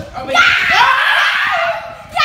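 A young man's loud, drawn-out shout mixed with laughter, lasting about a second and a half and dropping in pitch at the end: an excited reaction during a game.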